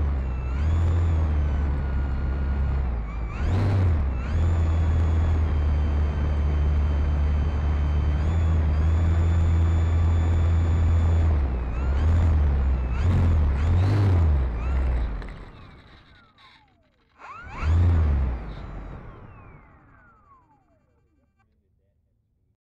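E-flite Turbo Timber Evolution's electric motor and propeller whining close to the microphone, the pitch rising and falling with several short surges. Near the end there is one last surge, then the pitch falls as the motor winds down and stops.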